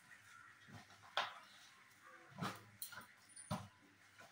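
Hands mixing onion pakora batter in a steel bowl, giving a few faint, separate knocks and clinks of fingers and bangles against the bowl.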